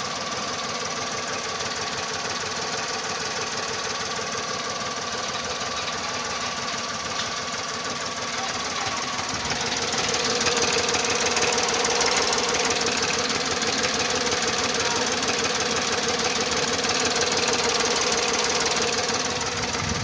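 VW Polo 1.2 12V three-cylinder petrol engine idling with a rapid, even pulsing, heard close up from the engine bay; it gets louder about halfway through. Its owner reports a shake in the engine that cleaning the spark plugs has not cured, and does not know the cause.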